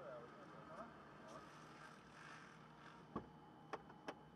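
Faint, indistinct voices in the background, with three short, sharp clicks or knocks in the last second.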